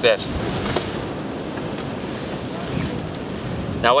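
Steady wind noise on the microphone over the rush of surf.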